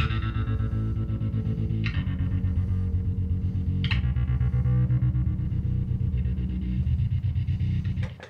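Electric bass played through octaver, fuzz, delay, reverb and a looper, giving a thick, choppy, synth-like tone. Bright note attacks come about two seconds apart over the first few seconds, and the sound cuts off suddenly at the end.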